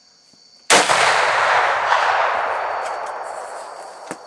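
A single loud muzzleloader rifle shot about three-quarters of a second in, followed by a long rolling echo that fades away over about three seconds.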